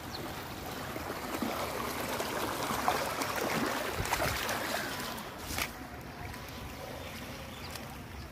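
Muddy floodwater running across a dirt track and a flooded field, a steady rush of flowing water that swells a little in the middle, with a few sharp knocks or clicks.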